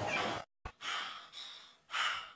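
A rush of noise that cuts off about half a second in, a short click, then an animated character's heavy, breathy huffing, about two breaths a second.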